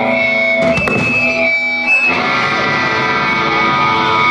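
Electric guitar through a stage amplifier: held, ringing notes, then a chord struck about two seconds in and left to ring.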